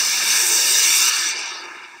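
Rocket whoosh sound effect: a loud burst of hiss that holds for about a second and then fades away.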